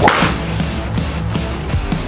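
A golf driver strikes a ball once, a single sharp crack right at the start, over background rock music.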